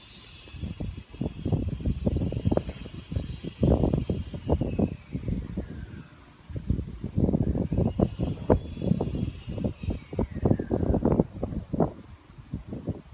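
Wind buffeting the microphone in irregular gusts, with a lull about six seconds in. A faint falling whine passes twice in the background.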